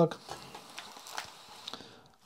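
Faint handling noises as a small CRT tube in its metal frame is turned around on a bench mat: light rubbing with a few soft knocks and clicks, one a little louder about a second in.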